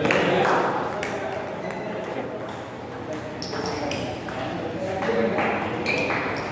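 Table tennis rally: the ball is struck back and forth, making sharp clicks off the bats and bouncing on the table, with voices in the background.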